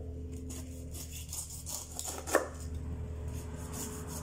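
Large kitchen knife cutting the tough skin off a whole pineapple on a wooden chopping board: a series of short crunching, scraping cuts, the loudest about two and a half seconds in, over a steady low hum.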